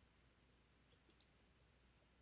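Near silence broken by two faint, quick clicks close together about a second in: a computer mouse clicked twice.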